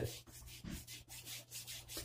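Hands rubbing quickly while working soft beard balm, a faint rhythmic rasping of about four strokes a second.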